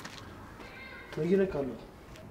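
A goat bleating once, a short call that falls in pitch, a little over a second in.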